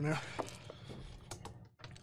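Scattered light clicks and crinkles of a plastic water bottle and plastic cups being handled.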